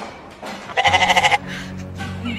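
A single quavering, sheep-like bleat, about half a second long and a little under a second in, over low background music.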